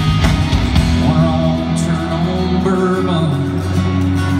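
Live country-rock band playing through a stadium sound system in a gap between sung lines: acoustic guitar over held bass notes and drums.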